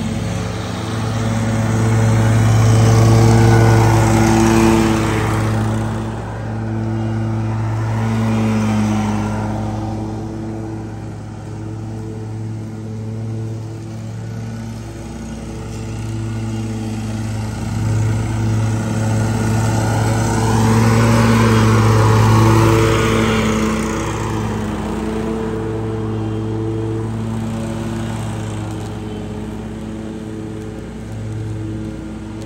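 An Exmark stand-on zero-turn mower's engine runs steadily with its deck blades cutting grass. It grows louder and brasher as it passes close, about three seconds in and again around twenty-two seconds, and settles back between passes.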